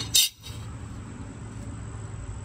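A short, sharp high clink a fraction of a second in, then a steady low background rumble for the rest.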